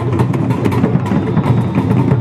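Loud music with rapid, evenly spaced drum strikes.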